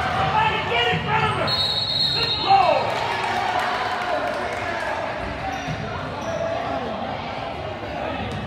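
Basketball dribbled on a hardwood gym floor during a game, echoing in a large hall, with voices from players and spectators. A brief high-pitched squeal comes about a second and a half in, and the loudest moment follows near the middle.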